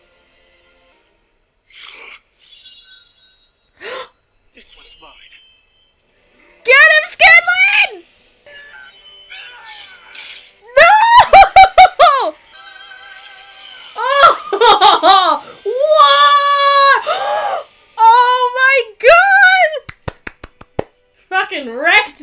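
A woman's high-pitched excited squeals and giggles, in several loud bursts starting about seven seconds in, after a quieter stretch of faint sounds.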